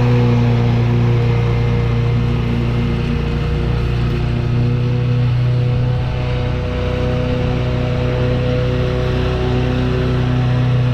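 Gravely Pro-Stance 52 stand-on zero-turn mower's engine running at a steady speed while it mows, moving away up the lawn. Music plays underneath.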